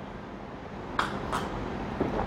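A person sipping a fizzy drink from a glass: two short sips about a second in, over quiet room tone.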